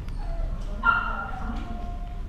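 A dog gives a sharp yip about a second in, which draws out into a long, slightly falling whine.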